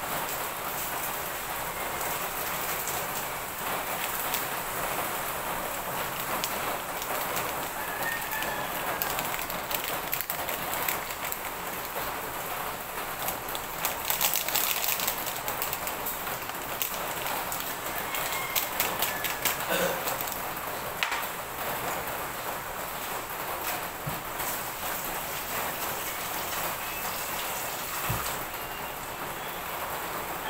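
A steady hiss like rain fills the background, with a few distant rooster crows. Around the middle come light clinks of a metal spoon stirring coffee in a ceramic mug.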